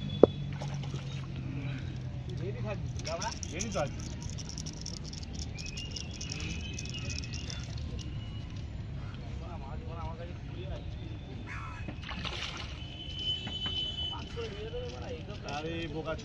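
Faint water sloshing from a hooked fish being played near the surface, under indistinct voices and a steady low background hum. A single sharp click comes just after the start.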